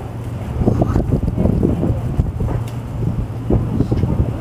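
Wind buffeting the camera's microphone: a loud, gusty low rumble that grows stronger about half a second in.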